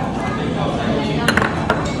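Chopsticks clinking against small ceramic dishes as soy-sauce chili is moved from a sauce dish into a bowl of noodle soup. There are two light clinks near the end, over a steady background hum.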